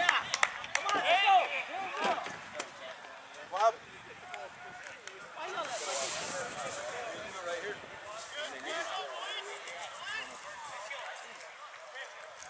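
Indistinct shouting and chatter from players and spectators, loudest in the first two seconds and then fainter. A brief hiss of noise comes about six seconds in.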